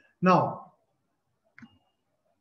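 A man's voice saying "Now," followed by a pause and a brief faint click near the end.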